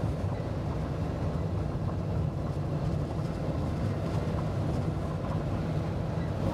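Farm tractor engine running at a steady low pitch as the tractor drives along a road.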